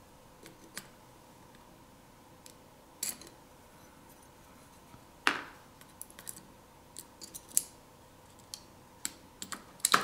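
Scattered light clicks and taps of a metal pry tool against a smartphone's main board and frame as the board is worked loose, at uneven intervals, the loudest about five seconds in and a quick cluster near the end.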